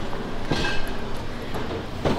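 Steady low rumbling background noise, like a moving vehicle's interior, with a short sharper sound about half a second in.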